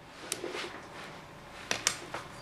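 Plastic knitting needles clicking lightly as stitches are worked: a few faint clicks, two in quick succession near the end.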